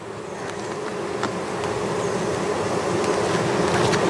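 Honey bees buzzing around an opened hive: a steady hum that grows steadily louder, with a few faint clicks.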